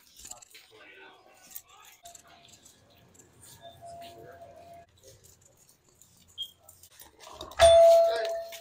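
Faint scattered rustling and shuffling, then near the end a loud clunk of a door being pushed open, setting off a steady electronic door-entry chime tone that keeps sounding.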